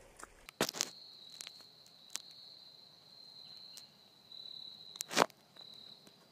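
An insect calling with a steady high-pitched trill that breaks off briefly about four seconds in and resumes. A few crunching footsteps on dry leaf litter and twigs; the loudest comes about five seconds in.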